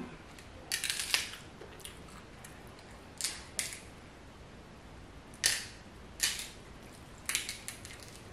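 Cooked shellfish shell crackling and snapping as it is peeled apart by hand. The crackles come in short clusters roughly every second, several of them in quick bunches.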